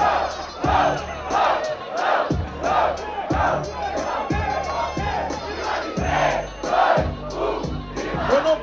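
A battle crowd shouting together in a steady rhythm, about one and a half shouts a second, over a beat with a thumping bass drum.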